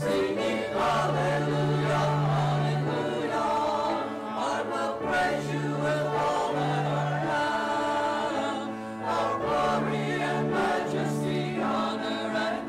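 A mixed church choir of men's and women's voices singing together, with long-held low notes beneath the melody.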